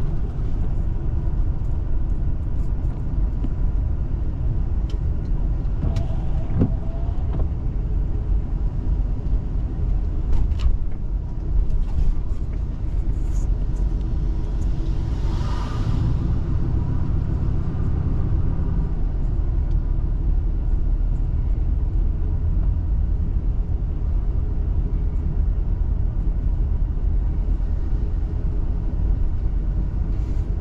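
Car interior noise while driving slowly on wet pavement: a steady low engine and road rumble, with a brief swell of hiss about halfway through.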